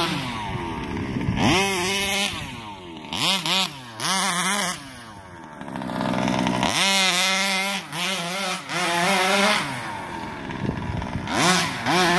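Rovan 36cc two-stroke engine on a 1/5-scale RC truck revving up and falling back again and again as the throttle is blipped, easing off briefly about halfway through.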